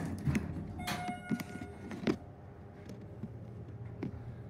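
Schindler hydraulic elevator car riding, a steady low hum from its drive, with a few knocks and clicks and a brief ringing tone about a second in.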